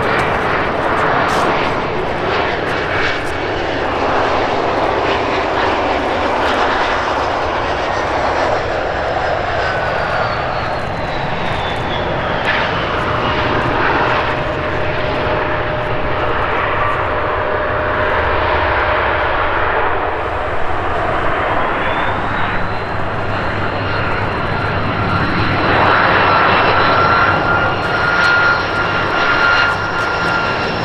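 Bombardier CRJ-900 jet's twin turbofans on landing approach and rollout, with a steady rush and a whine that falls in pitch as it passes. About two-thirds of the way in, an Airbus A330's turbofans on final approach take over: a whine that rises and then holds steady, loudest near the end.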